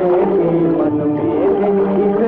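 Instrumental interlude of a 1950s Hindi film song: long held melody notes that slide a little in pitch, with no words sung.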